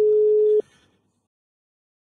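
Telephone line tone: one steady beep that cuts off about half a second in.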